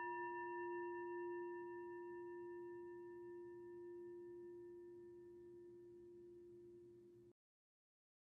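Meditation bell, struck just before, ringing out as a low hum with several higher overtones and slowly fading, cut off abruptly about seven seconds in. It is the chime that closes a guided meditation.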